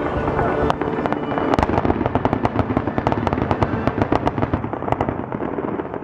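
Aerial fireworks bursting overhead in a rapid run of sharp pops and crackles, many a second, thinning out in the last second or so.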